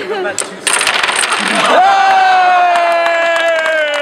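A homemade Rube Goldberg contraption of wood, cardboard and plastic pipe set running: about a second of rattling and clattering, then a long, loud tone that slowly falls in pitch.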